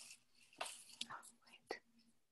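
Faint whispering in short breathy bursts, coming from the soundtrack of a short art video played over a video call, with a faint steady low hum underneath.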